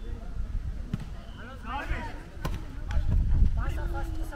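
Volleyball being hit by players' hands during a rally: sharp slaps about a second and a half apart, with players shouting in between.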